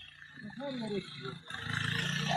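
A person's wordless voice, a drawn-out sound rising and falling in pitch for about a second. A steady low hum comes in near the end.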